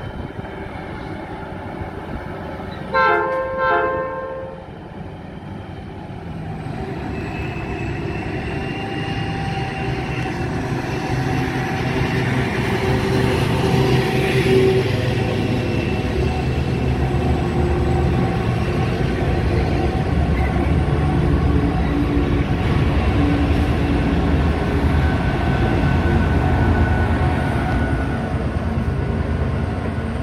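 A freight train hauled by 82 class diesel-electric locomotives gives a short horn blast about three seconds in. The locomotives' engines then build up loud and low as the train comes in and passes close by.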